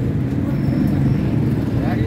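Steady low mechanical rumble that runs evenly without a break.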